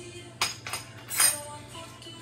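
A few sharp metallic clinks of a spoon knocking against a container, the loudest about a second in, over steady background music.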